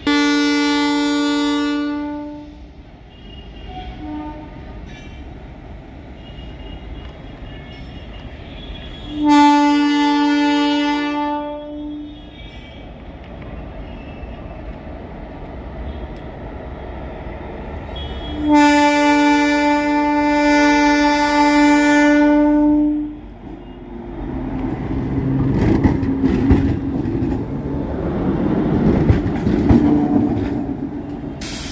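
Railway inspection car's horn sounding three long blasts, the last the longest. Near the end the car runs past close by, its wheels clicking and rumbling on the rails.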